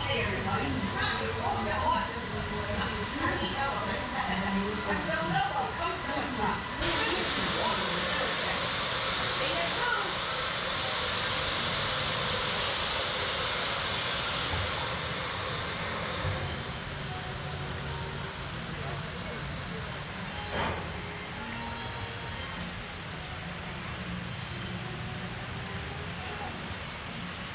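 Voices of a crowd for the first several seconds, then a sudden steady hiss lasting about nine seconds, giving way to quieter outdoor background noise with one brief sharp sound near the end.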